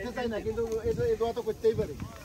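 People talking at a lower level than the surrounding conversation, one voice drawn out on a long steady sound; no separate non-speech sound stands out.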